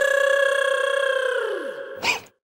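A single held musical note with overtones, a sound-effect sting, that starts suddenly, holds steady for nearly two seconds and fades, with a lower part sliding down in pitch near the end.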